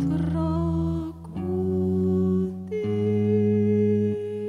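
A woman's voice sings long held, humming-like notes over low sustained electric guitar tones, the notes shifting in pitch together about a second in and again near three seconds.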